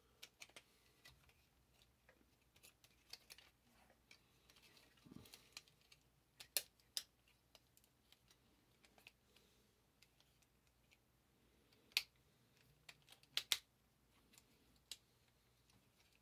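Faint, scattered clicks and taps of a plastic Transformers Rhinox action figure's joints and parts being worked by hand during a fiddly transformation, with a few louder snaps along the way.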